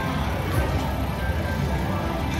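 An Aristocrat slot machine plays its bonus-wheel music and sound effects while the wheel spins, at a steady level.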